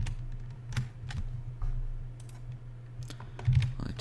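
Scattered keystrokes on a computer keyboard, separate clicks a fraction of a second apart, over a steady low hum.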